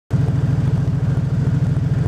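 An old International tractor's swapped-in Chevrolet 350 small-block V8 running steadily through dual exhaust stacks, with an even, rapid low pulse.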